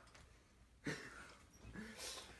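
Mostly quiet room, with one short burst of noise about a second in and a brief voiced sound near the end.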